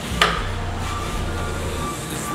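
Foot pedal of a hydraulic scissor lift table cart stamped once, a knock about a quarter second in, over a low steady hum.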